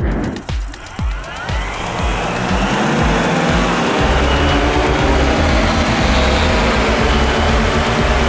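Electric motors and ducted propellers of a four-rotor foam RC helicarrier spinning up with a rising whine about a second in, then holding a loud, steady whir ready for lift-off. Background music with a steady beat plays underneath.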